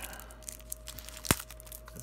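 Plastic shrink-wrap on a card deck being picked at and peeled with the fingers, faint crinkling with one sharp click a little over a second in.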